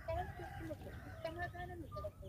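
Chickens clucking in a quick run of short calls, over a steady low rumble.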